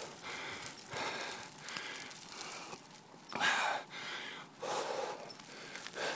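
A cyclist breathing hard from the effort of climbing a hill, about one breath a second, the loudest about halfway through.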